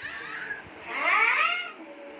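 Two high-pitched cries: a short falling one, then a longer, louder one about a second in that rises and falls.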